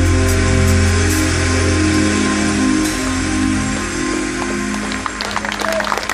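A live band's closing chord, held with bass and keyboard, rings out and fades, and applause begins to break in about five seconds in.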